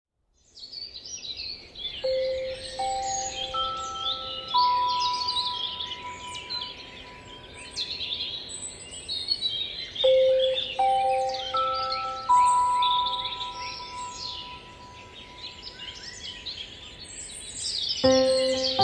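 A dense chorus of many songbirds singing, fading in at the start. Under it, soft music of four long ringing notes that come in one after another, each higher than the last, about two seconds in and again about ten seconds in.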